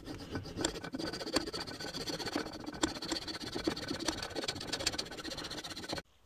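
Coping saw cutting through a small piece of wood by hand: a continuous rasp of quick back-and-forth strokes, cutting off suddenly at the end.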